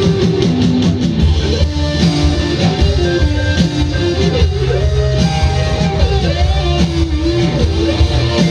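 An indie rock band playing live, heard from the crowd: guitar and drums over a steady bass in an instrumental passage, with a held melody line that slides from note to note.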